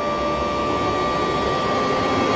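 Rising sound effect of a title intro: a dense rushing noise with a steady high tone held over it, slowly growing louder.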